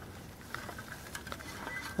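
Faint light patter and a few small ticks of dry soil crumbling and falling as a freshly dug potato plant is lifted out of the ground by its stems.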